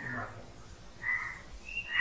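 A pause in a man's recorded sermon: the end of a spoken word at the start, then a brief faint sound about a second in.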